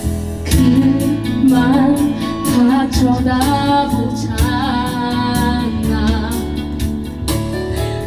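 A woman singing a Korean song into a handheld microphone over a karaoke backing track with a regular beat. The voice comes in about half a second in.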